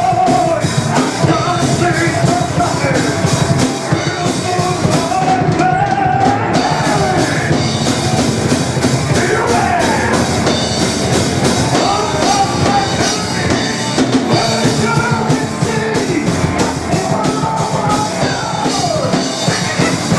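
Power metal band playing live: distorted electric guitar, electric bass and a drum kit with cymbals, loud and without a break, with a melodic line wavering above the band.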